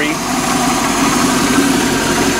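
Small-block Chevy 350 V8 of an OMC 230 Stringer 800 sterndrive idling steadily, its timing just retarded slightly and idle raised a little.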